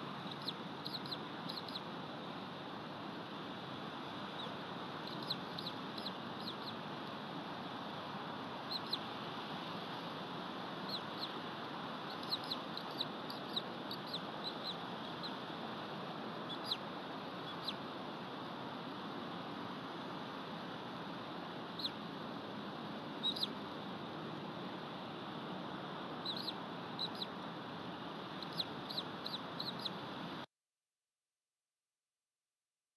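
Short, high bird chirps come scattered singly and in small clusters over a steady background hiss.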